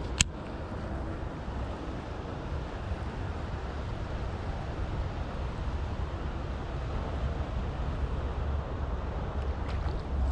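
Steady low rumble of wind buffeting the microphone, with one sharp click just after the start.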